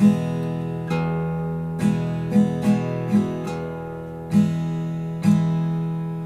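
Acoustic guitar played on an E chord in a slow waltz rhythm: the open low E string picked as a bass note, then down strums, about eight strokes in all. The last chord, near the end, is left ringing and fades.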